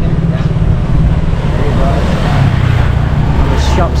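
Street traffic with a motor vehicle passing close by, its noise swelling about two seconds in and fading toward the end, over a steady low rumble.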